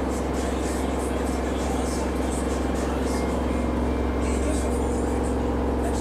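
A steady low hum with faint steady tones above it, unchanging throughout: an unexplained noise in the room.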